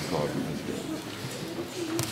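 Faint voices and murmur in a concert hall, with a single clap at the very start as the applause ends.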